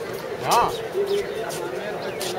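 Background voices of people talking, with a short loud pitched call about half a second in that rises and falls.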